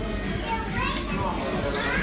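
Busy restaurant background din: many overlapping voices chattering, with children's higher voices among them.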